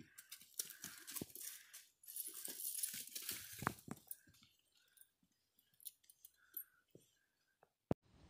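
Faint rustling and crunching on the ground with scattered clicks as a hunting dog is turned loose, a denser stretch of rustling about two seconds in. A few brief faint squeaks follow near the middle.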